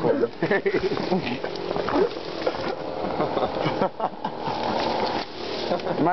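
Indistinct men's voices over a steady, hissy background noise.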